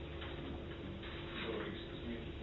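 Soft, irregular ticks and taps of a lecturer at a whiteboard, stepping up to it and starting to write with a marker, over a steady low room hum.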